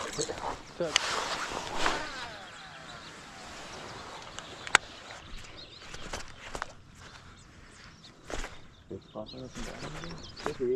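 A cast and retrieve on a baitcasting reel: the spool whirs and slows as line goes out, a sharp click comes just before halfway, then the reel is cranked in.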